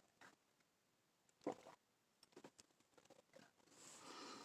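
Near silence with a few faint, short mouth sounds, the clearest about one and a half seconds in: a person sipping and swallowing a drink of hot chocolate.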